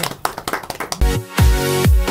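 A few people clapping by hand, then about a second in music cuts in with a loud beat of deep, falling bass hits about twice a second.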